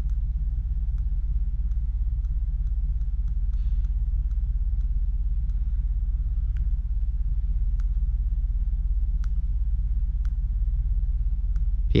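A steady low rumble, with faint light clicks scattered through it from the buttons of a handheld digital compression tester being pressed.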